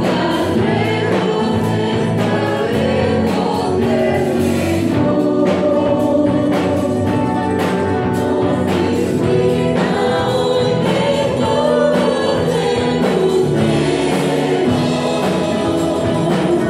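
A congregation singing a Spanish-language hymn together, accompanied by a live band of guitars and drums, with a steady beat.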